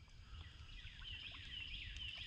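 Songbirds chirping faintly in the background, a busy run of short, quick high chirps and slurred notes, over a low rumble.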